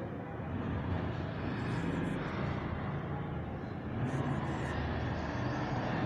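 A marker writing on a whiteboard, a few short faint scratching strokes, over a steady low background rumble.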